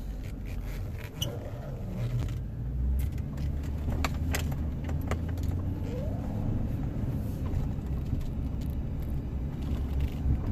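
Chevrolet Silverado pickup being driven, heard from inside the cab: a steady low road and engine rumble. Scattered light clicks and jingling rattles sound over it, mostly in the first half.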